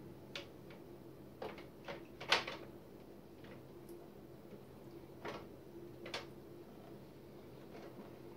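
Short plastic clicks and taps as blue hose clips and tubing are worked off the plastic fittings of a reverse osmosis filter cartridge, about six in all, the loudest a little over two seconds in.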